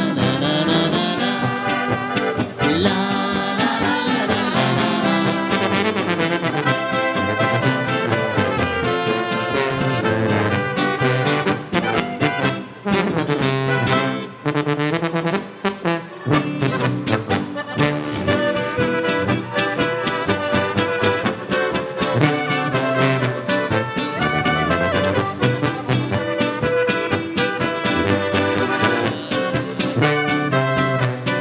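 A live folk band plays an instrumental dance tune, led by brass with tuba, trumpets and diatonic button accordion.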